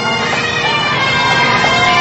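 Pipe band's bagpipes playing a tune over their steady drones.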